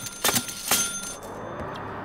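A cartoon bus ticket machine clicking out tickets: a quick series of clicks with a faint ringing tone in the first second. The bus engine then runs steadily.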